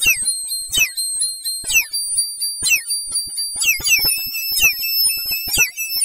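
Meme audio pushed through heavy electronic pitch and warp effects, shifted very high: shrill, alarm-like steady tones that jump between pitches, broken by quick falling chirps and faint clicks about twice a second.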